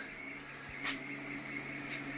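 A low, faint, steady hum, with a brief soft noise just under a second in.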